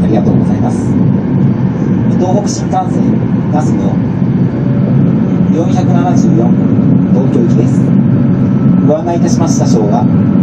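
Steady low rumble of an E2 series Shinkansen running at speed, heard inside the passenger car, with the conductor's public-address announcement coming and going over it.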